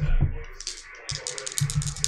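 Two dice being shaken in a hand before a roll: a quick run of small clicking rattles that starts about half a second in and grows denser, with a few dull handling bumps under it.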